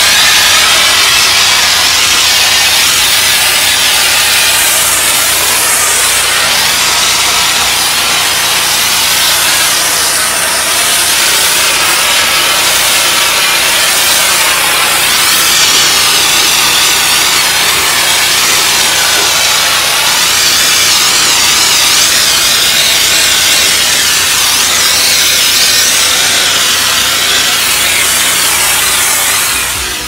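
Hot-water pressure washer's jet blasting asphalt: a loud, steady hiss and spatter of water on the pavement, with a steady machine hum underneath. It cuts off suddenly at the very end.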